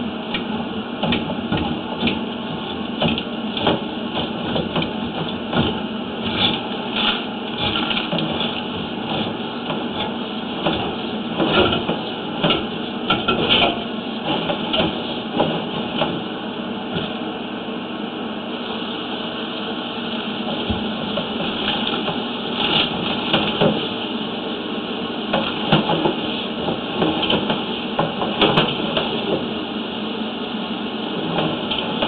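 Sewer inspection push camera and its push cable being fed down a drain line: irregular clicks and knocks over a steady noise.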